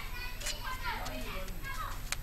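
Background voices, children's among them, talking and calling at a distance, fainter than the nearby speech around them, with one short sharp click about a quarter of the way in.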